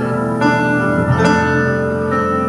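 Live band music led by keyboards: sustained chords, with new notes struck about half a second and a little over a second in.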